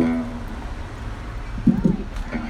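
An acoustic guitar chord rings and dies away in the first moments, leaving a quiet street background. Near the end comes a short vocal sound, rising and falling in pitch.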